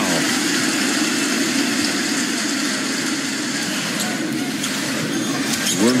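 Basketball arena crowd cheering steadily after a foul is drawn.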